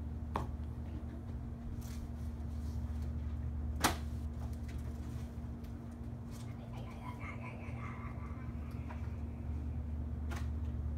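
Jigsaw puzzle pieces clicking and tapping as they are handled and pressed into place: a few light clicks, with one sharp click about four seconds in. A steady low hum runs underneath.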